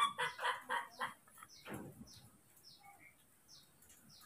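Animal calls: a quick run of short calls in the first second, then one falling call, over faint high chirps repeating about twice a second.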